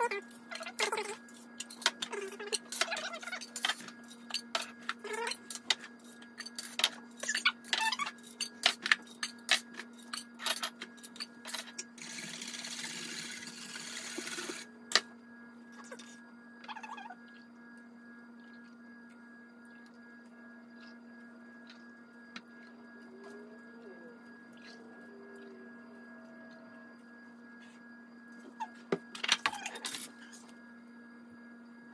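Glass canning jars clinking and knocking, many times in quick succession, as they are handled and set down on the counter. About halfway through there is a few seconds of hiss, then a quieter stretch with a steady low hum.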